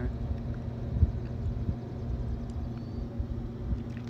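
Outdoor background rumble: a low, uneven rumble with a few faint knocks and no speech.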